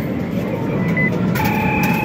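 Steady arcade din, with a short electronic beep about a second in and then a held electronic tone of two pitches from about one and a half seconds. This is the coin pusher's card reader accepting a wristband tap.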